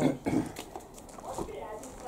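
Low, indistinct voices talking, with a short louder bit of speech right at the start.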